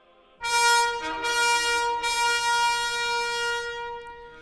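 Ceremonial fanfare trumpets with hanging banners sounding together, a short note and then one long held note of about three seconds.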